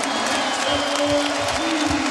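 Basketball arena crowd cheering and applauding just after a made three-pointer, with a few held tones running underneath.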